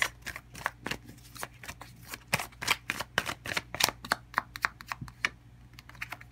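A tarot card deck being shuffled by hand: an irregular run of card clicks and flicks, several a second, as cards slide from one hand to the other.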